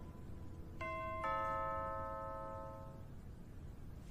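Two-note doorbell chime: a higher note rings about a second in and a lower note just after, both fading away over about two seconds.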